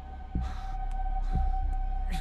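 Suspense film score: low heartbeat-like thuds about once a second under a steady, high sustained tone.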